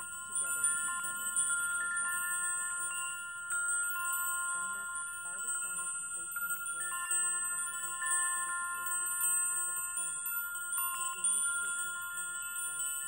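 Metal chimes ringing on and on, with frequent overlapping strikes keeping a cluster of high, bell-like tones sounding. This is the chiming used to mark an energy clearing.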